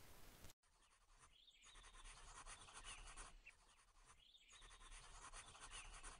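Faint pencil scratching on paper as letters are drawn. It comes in three runs of strokes, from about a second in, with short pauses between them.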